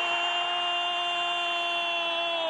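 A male football commentator's long goal cry, held on one steady note without a break.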